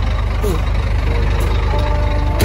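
A truck's diesel engine idling steadily, a low even pulse running throughout.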